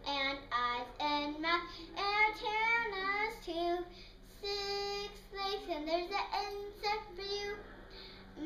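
A young girl singing a kindergarten song about the parts of an insect, without accompaniment. Her voice slides up and down in pitch through short notes, with one longer held note about halfway through.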